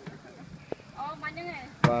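A person talking, with one sharp click about a third of the way in.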